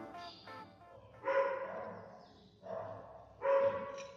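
A dog barking three times, faintly, starting about a second in.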